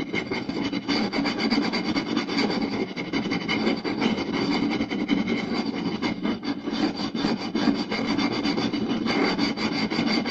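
Fingers scratching and tapping fast on a round wooden plate: a dense, unbroken rasping dotted with many quick taps.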